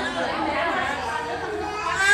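Speech only: indistinct chatter of several voices, with no words made out.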